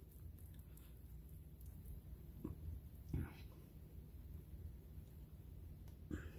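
Quiet room tone with a low hum, broken by two faint, soft knocks from hands handling a polymer clay bead on a paper-covered work mat, the second a little louder, about halfway through.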